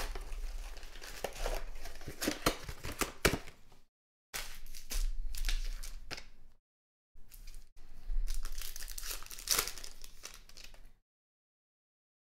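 Trading-card pack wrappers crinkling and tearing as hockey card packs are opened by hand, with many sharp crackles. The sound drops to dead silence three times, the last near the end.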